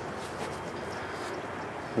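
Steady outdoor background noise, an even hiss with no engine running yet.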